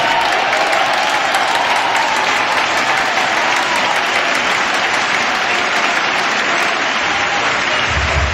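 Audience applauding, a dense, steady clapping that holds throughout, with voices faintly audible under it.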